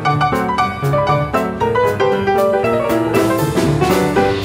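Upright piano solo with quick right-hand runs over a low left-hand bass line, a drum kit softly keeping time with steady ticks; the piano settles into held notes near the end.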